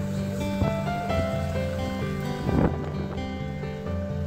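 Background music with held notes that change step by step, and a short, louder swell about two and a half seconds in.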